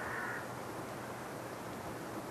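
Steady background hiss with one short, high bird call at the very start.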